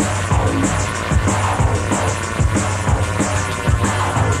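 Old-school jungle / drum and bass track playing: a steady deep bass line under a fast breakbeat of punchy kicks and quick cymbal hits. It is a radio broadcast recorded onto cassette tape.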